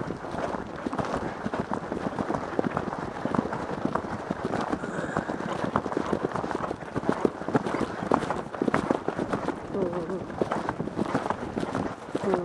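Hoofbeats of a ridden horse moving along a grass track, a dense run of dull knocks close to the microphone over a steady rushing noise.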